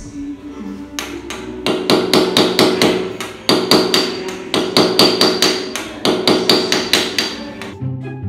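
Ball-peen hammer striking a small hand-held chisel-like tool in quick, even blows, about four a second, with a metallic ring. It is chipping and scoring the tile and concrete by hand in place of a grinder.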